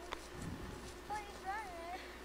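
A single sharp click just after the start, then about a second in a child's high-pitched voice calls out, its pitch wavering up and down.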